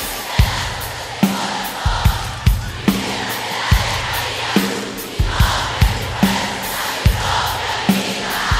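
Live drum kit beat, bass drum hits about every half second, under a large stadium crowd cheering and chanting.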